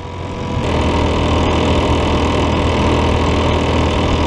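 Motorcycle engine running at a steady cruising speed, with wind and road noise around it. The sound shifts abruptly a little over half a second in, then holds steady.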